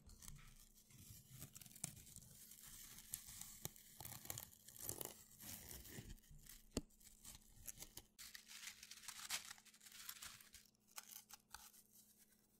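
Faint footsteps in boots crunching and crackling on a dry pine-needle forest floor, an irregular run of steps, with a low steady hum underneath.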